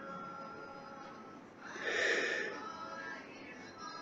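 A person takes one long sniff through the nose, about two seconds in, nosing a glass of bourbon.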